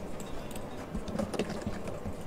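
Computer mouse clicking several times over a low, steady room hum.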